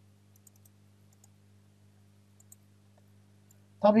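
A few faint, sharp computer mouse clicks spaced irregularly, over a low steady electrical hum from the microphone.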